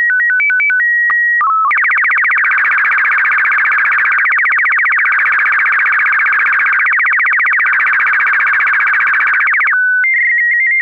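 Slow-scan TV (SSTV) image signal. It opens with a short run of stepped beeps and a calibration header of held tones, then about eight seconds of rapid, even, buzzing warble as the picture lines are sent, and ends near the end with a brief steady tone.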